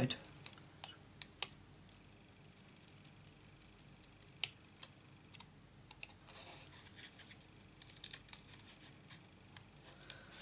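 Small craft scissors snipping around a stamped word on cardstock: faint, irregular short snips and clicks, with small clusters of quick cuts in the second half.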